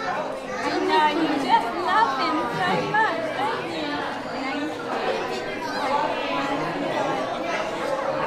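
Indistinct chatter of many overlapping voices filling a busy restaurant dining room, with closer voices talking over it.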